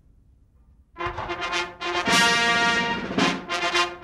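A military brass band strikes up a national anthem about a second in, after near silence, playing loudly with sharp drum or cymbal strokes.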